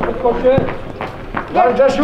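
Men shouting on an outdoor football pitch during play, with a few short sharp knocks in between; a louder run of shouting starts near the end.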